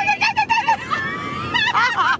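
High-pitched voice sounds: a quick run of hooting, laugh-like pulses, then a held high 'ooh' that wavers near the end.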